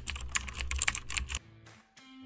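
Typing sound effect: a quick run of key clicks that stops about a second and a half in.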